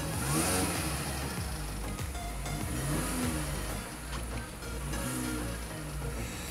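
2005 Mini Cooper S's supercharged 16-valve four-cylinder engine idling, blipped up and back down three times in short revs.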